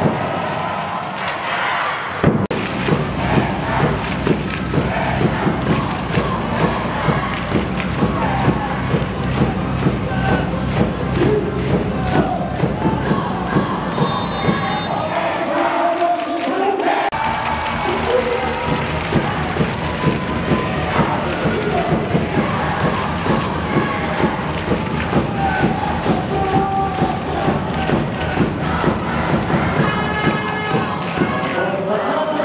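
Loud cheer music played over an arena sound system, with a heavy, regular bass-drum beat of about two strokes a second, and a crowd cheering and chanting along. The music comes in about two seconds in after a short lull, and the bass drops out briefly around the middle before returning.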